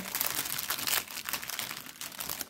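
Clear plastic packaging bag crinkling as it is handled and opened, a dense run of fine crackles, louder in the first second and softer after.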